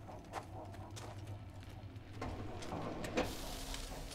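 A low steady hum with a few scattered light knocks and clicks; the sharpest click comes about three seconds in.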